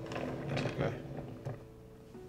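Wooden lazy Susan being spun, its bearing giving a rolling rumble with a few small clicks that dies away about a second and a half in.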